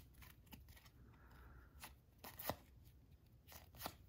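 Faint flicks and clicks of cardboard baseball cards being thumbed through one by one in the hands. There are a few light ticks, the sharpest about two and a half seconds in.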